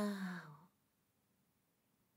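A woman's voice imitating a cat's meow, a drawn-out 'nyaa' that falls in pitch and fades out under a second in.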